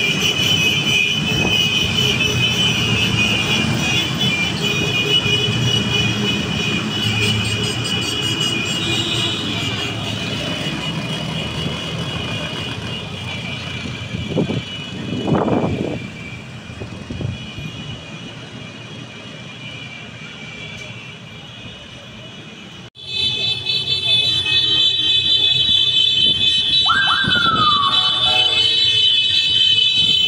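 Vehicle horns held down in a continuous celebratory honking chorus over the engine rumble of a passing convoy of ATVs, motorbikes and cars. The honking fades to traffic rumble through the middle, with one louder passing vehicle about halfway, then after a sudden cut a steady chorus of horns returns, with a short falling whistle-like tone near the end.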